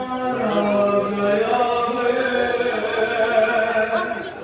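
A man chanting a nauha, a Shia mourning lament, unaccompanied into a microphone, in long drawn-out held notes that slide slowly in pitch.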